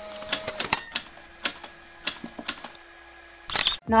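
A film-camera sound effect: scattered shutter-like mechanical clicks at uneven spacing over a faint steady hum, after a held tone that cuts off early on. A loud burst of noise comes near the end.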